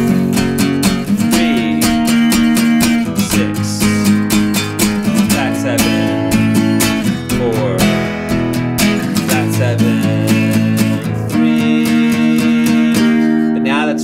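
Acoustic guitar strummed steadily through a chord progression, several strokes a second, the chord changing about every two seconds.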